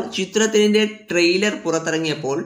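Speech only: a narrator's voice talking in Tamil.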